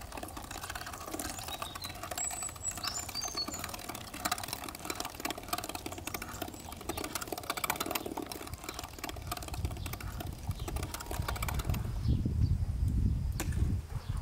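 Hand-cranked metal meat grinder being turned, a fast run of small clicks and squelches as meat is forced through the plate. Near the end a louder low rumble takes over.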